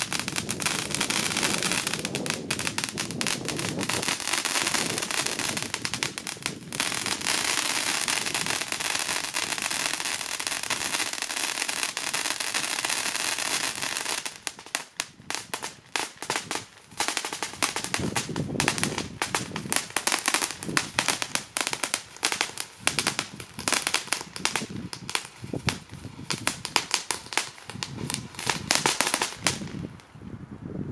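Funke Teufelsfontäne silver-cracker fountain firework burning: a steady rushing spray of sparks thick with crackling for about the first half. It then turns to rapid bursts of sharp crackling pops with short gaps between them, and stops just before the end.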